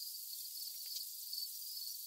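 Steady high-pitched insect trilling over a faint outdoor hiss, with a few faint soft ticks a little before the middle.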